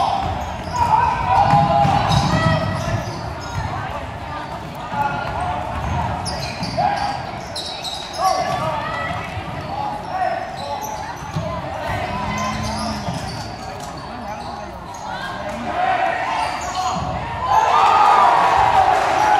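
A basketball being dribbled on a hardwood gym court during live play, with sneakers squeaking on the floor and voices from spectators and players in the gym.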